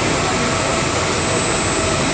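Pilot blown film line running: a steady, loud rush of air and machine noise with a thin, high, steady whine over it.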